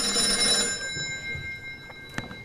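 Telephone bell ringing, the banker's call coming in: one ring that fades away about a second in.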